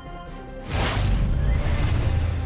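A news-bulletin music bed, then, under a second in, a whoosh with a deep bass boom: the graphics transition sting between headlines.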